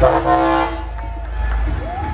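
Semi-truck air horn sounding one short blast of under a second.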